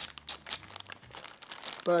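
Clear plastic zip-lock bag crinkling as hands handle it: a quick, irregular run of crackles.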